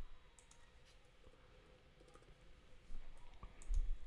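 Faint, scattered computer mouse clicks at a desk, with a low thump near the end.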